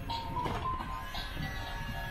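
Toy tabletop claw machine playing its simple electronic jingle while its claw mechanism runs with a low motor rumble, and a click about halfway through.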